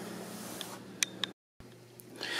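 Quiet room tone with two faint clicks about a second in, broken by a brief dead silence where the recording is cut.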